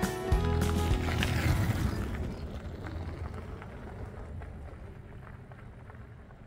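Background music fading out over the first two seconds, over the rumble of an e-bike's fat tyres rolling across wooden bridge planks, growing fainter as the bike rides away.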